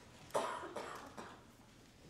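A person coughing: one loud cough about a third of a second in, followed by two smaller ones.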